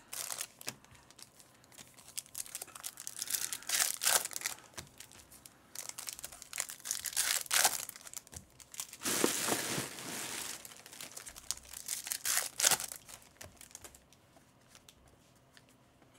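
Foil wrappers of Topps baseball card packs being torn open and crinkled by hand: irregular crackling rustles, loudest about nine to ten seconds in, dying down near the end.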